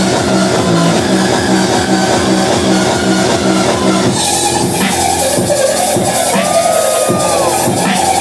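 Loud music from a live DJ set over a club sound system, with a repeating beat in the first half. About four seconds in it changes abruptly to a different, brighter-sounding passage.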